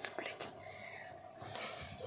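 A person whispering quietly, breathy hiss-like speech sounds with a few soft clicks.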